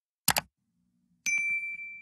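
End-screen sound effects: a quick double mouse click about a third of a second in, then just past a second in a bright bell chime that rings on one clear high note and fades away.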